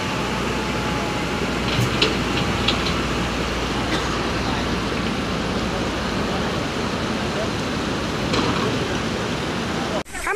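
Steady rush of floodwater, with a few faint clicks about two seconds in.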